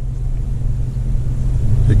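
A Jeep's engine idling, a steady low rumble heard from inside the cabin.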